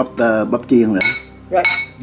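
A utensil clinking against a frying pan, two ringing strikes about a second in and near the end, under a voice.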